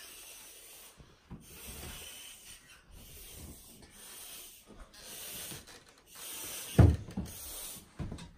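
Stretchy balloon ball being blown up by mouth through a stick: a string of breathy hissing puffs about a second long with short pauses between them. Near the end comes one loud, short low thump.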